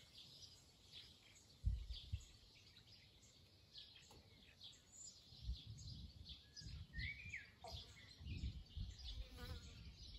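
Faint chirping of several small birds, with now and then a short whistled call. Low gusts of wind buffet the microphone, with a sharp bump about a second and a half in and more buffeting in the second half.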